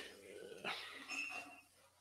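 A dog making a few brief, high-pitched vocal sounds in the first second and a half.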